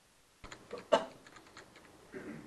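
Computer keyboard typing: a quick run of keystroke clicks starting about half a second in, with one louder knock near the one-second mark.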